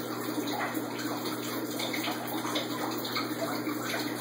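Aquarium filtration running: a steady rush of moving water with many small irregular splashes and trickles.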